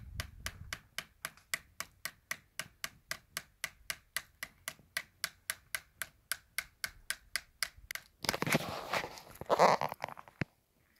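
A knife blade tapping into tree bark in an even run of sharp wooden ticks, about four a second. About eight seconds in, a louder scraping rustle takes over.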